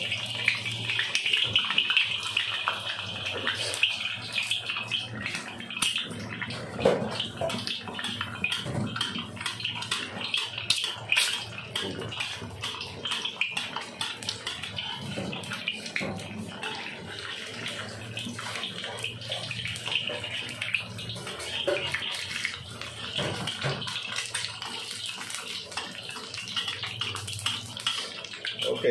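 An egg frying in hot oil in a wok, with a steady dense sizzle and crackle throughout.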